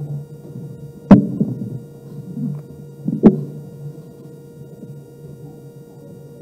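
Two sharp knocks, a little over two seconds apart, over a steady low room hum with a faint murmur.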